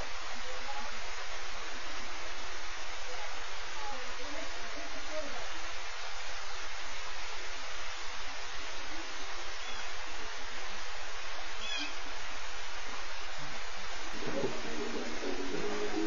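A steady rushing hiss with no clear pitch or rhythm, with a few faint chirps over it. About two seconds before the end, a low sound of several steady tones comes in.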